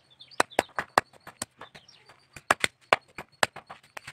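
Curved knife blade striking a coconut husk held on a wooden block, shredding it into coir fibre and pith: a dozen or so sharp, irregular knocks.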